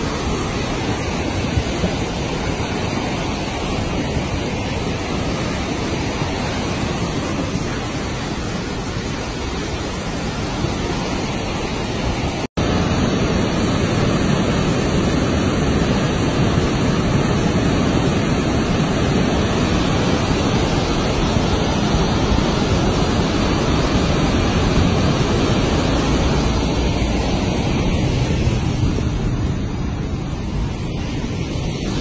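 Steady rushing of a muddy river in heavy flood, its flow swollen by heavy rains. A momentary dropout comes about twelve seconds in, after which the rush is louder.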